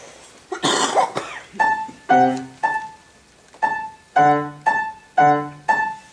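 A short cough about half a second in, then a grand piano starts playing: notes and chords struck in a steady rhythm, each ringing and fading.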